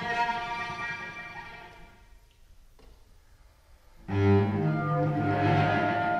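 Contemporary chamber music for bassoon and cello: sustained notes fade away over the first two seconds into a near-silent pause, then a sudden loud entry of low, held notes about four seconds in.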